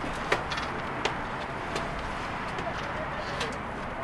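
Steady outdoor background noise with a few sharp clicks scattered through it, spaced roughly every half second to a second.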